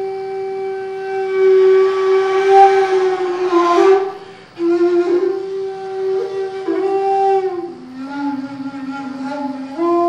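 Jinashi shakuhachi (bamboo Zen flute) playing a slow solo piece in long held notes. About three seconds in, a breathy swell leads into a short pause near four seconds. A new phrase follows; its note drops lower near eight seconds and rises again at the end.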